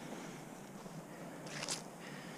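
Faint footsteps through dry grass and sandy ground while walking, with one short louder rustle about one and a half seconds in.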